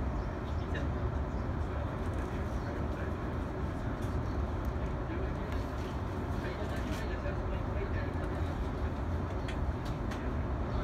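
Steady low rumble of a stopped electric train, heard from inside its front end, with no distinct rise as the other train approaches.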